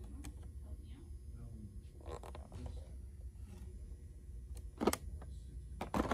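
Hard plastic blister pack of an oil filter cap wrench being handled, giving a few short crinkles and clicks, about two seconds in and twice near the end, over a low steady hum and faint background voices.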